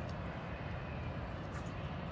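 Steady, low outdoor background noise, a faint even rumble with no distinct sounds in it.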